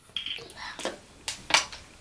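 Quiet handling noises: a few short, soft clicks and faint rustles.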